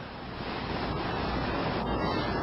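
A man's soft, breathy laughter close to a clip-on microphone: a rushing noise with no voiced sound, slowly growing louder.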